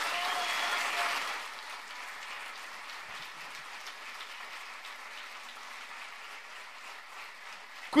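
Audience applause, loudest in the first second, then continuing more quietly and steadily.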